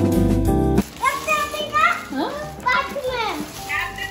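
Guitar-backed music that cuts off abruptly about a second in, followed by a young child's excited, high-pitched voice, exclaiming and squealing with sharply rising and falling pitch.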